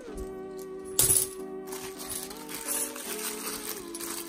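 Background music with steady held notes, and about a second in a brief rattle of £2 coins being handled in a plastic bank bag.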